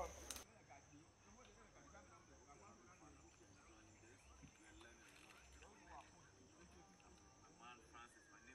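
Near silence: faint outdoor ambience with a steady high-pitched insect drone and faint distant voices.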